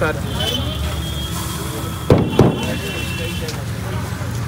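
Steady low street-traffic hum with a thin high whine over it. Two sharp knocks about a third of a second apart come midway, as marinated chicken is packed into a green bamboo tube.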